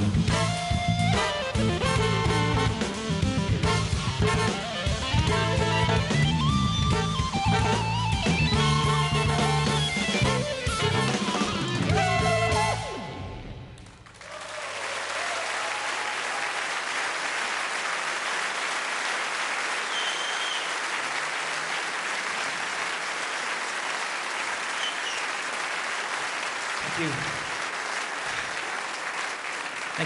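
A live jazz band plays the last bars of a piece, which ends about 13 seconds in. Steady audience applause follows for the rest of the time.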